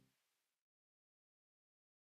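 Silence. The last trace of a music fade-out dies away within the first half second, and then there is no sound at all.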